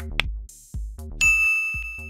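Notification bell sound effect: one bright ding a little over a second in, ringing for almost a second, over electronic background music with a steady beat. A short rising blip sounds at the very start.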